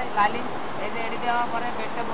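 Men's voices talking over the steady mechanical drone of multi-head embroidery machines running.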